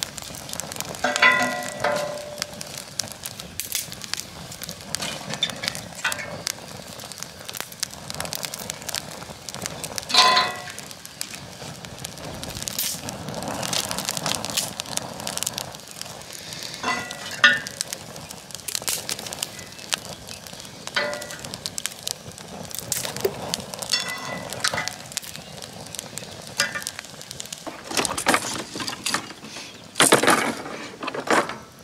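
Twig-and-wood fire crackling in a metal camp stove, with sharp pops throughout. A few short pitched squeaks stand out over it now and then, the loudest about ten seconds in.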